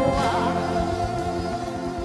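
Live gospel music: a choir singing long held notes over the band, getting gradually quieter.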